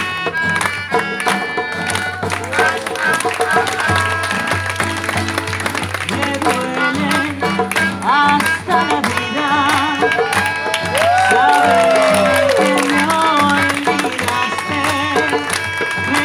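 Live acoustic street band playing: a strummed acoustic guitar and a melodica holding sustained notes, with voices singing and calling out over them, one voice sliding down in a long falling cry about two-thirds of the way through.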